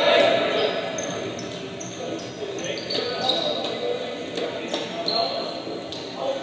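Basketball game in a gym: sneakers give many short high squeaks on the hardwood court and the ball thumps, over crowd chatter in a large hall.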